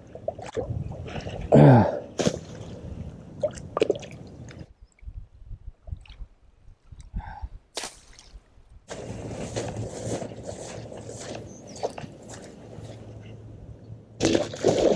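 Shallow muddy floodwater sloshing and dripping around a person wading, with a short, loud voiced exhale about a second and a half in. A quieter stretch follows in the middle, then a steady rushing noise over the last five seconds.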